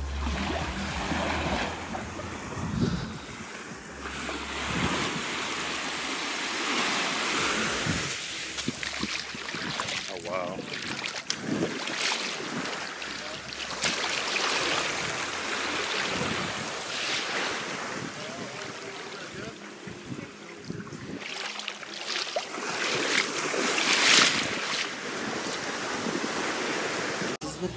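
Small waves washing on a sandy shore, with wind gusting on the microphone, swelling to a louder rush near the end.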